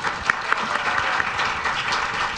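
Audience applauding, many hands clapping together in a dense, steady patter.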